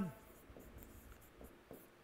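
Faint scratches and taps of a stylus writing on an interactive smartboard screen.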